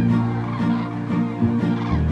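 Common cranes calling in a flying flock, their bugling calls layered over film music with sustained bass notes and a repeating string figure.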